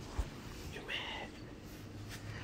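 A brief whispered sound from a person about a second in, after a soft low thump near the start, over a faint steady low hum.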